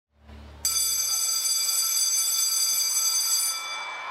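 School bell ringing steadily for about three seconds, starting suddenly about half a second in and fading near the end, signalling the start of a class period. A brief low hum comes just before it.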